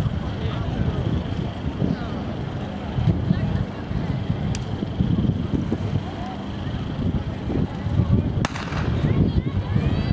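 Starter's gun firing once about eight and a half seconds in, a single sharp crack that starts a 200 m sprint, over a steady low rumble and background voices.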